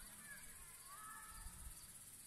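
Near silence: faint outdoor ambience in a wooded campsite, with a couple of faint short chirps.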